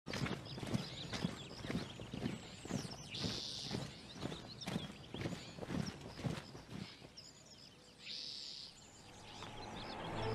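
A column of soldiers' boots marching on a dirt path, a steady tramp of about two steps a second that fades out about seven seconds in. Two brief high hisses come at about three seconds and eight seconds, and music starts to rise near the end.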